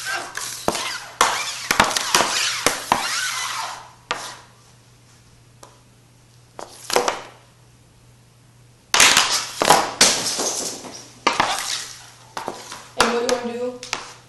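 Ice hockey stick blade scraping and clacking against a puck and a smooth hard floor as the puck is scooped and flipped up with the toe of the stick, in two busy bouts with single knocks in a quieter stretch between. A steady low hum runs underneath.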